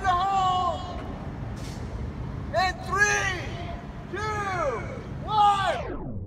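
A series of long, drawn-out shouted calls, each rising then falling in pitch, over a steady low rumble: warning calls just before a gasoline explosion is set off.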